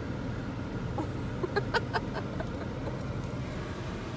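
Steady low hum inside a car's cabin, with a quick run of faint short clicks about a second and a half in.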